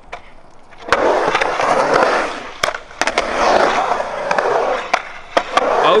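Skateboard wheels rolling across a concrete bowl. The board drops in with a sharp clack about a second in, then a loud, even rumble follows with a few more sharp clacks.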